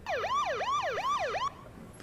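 Electronic siren in a fast yelp, its pitch sweeping up and down about three times a second, cutting off about one and a half seconds in.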